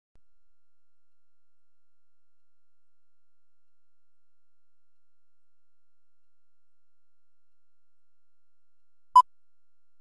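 Near silence, then a single short beep about nine seconds in: the sync beep of a film countdown leader, the "2-pop" that sounds as the countdown nears its end.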